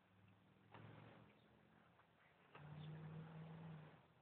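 Near silence, with two faint brief noises: a short one about a second in and a longer one from about two and a half seconds in.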